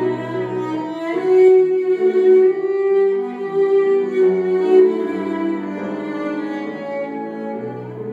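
Cello and piano playing a slow, lyrical melody. About a second in, the cello settles on a long held note over the piano accompaniment; the playing is loudest through the middle and grows softer near the end.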